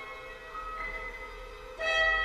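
Symphony orchestra playing slow, sustained tones that shift in pitch, with a louder chord entering near the end.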